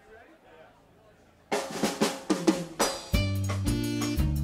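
Live drum kit playing a fill of snare and kick hits, starting about a second and a half in after a quiet moment. The full band comes in on a low bass line about three seconds in, starting a funk-jazz tune.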